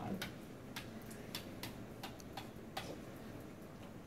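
Dry-erase marker tapping and scratching on a whiteboard, a string of short, irregularly spaced clicks and strokes as numbers are written out.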